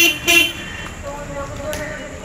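A vehicle horn honking twice in quick succession, two short toots near the start, followed by quieter street background.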